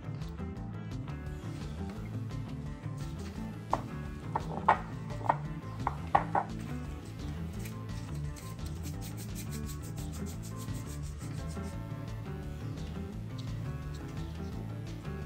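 Gloved hands working soft, sticky dough on a tray: rubbing, rolling and stretching, with a cluster of sharp sticky clicks between about four and six and a half seconds in. Quiet background music runs underneath.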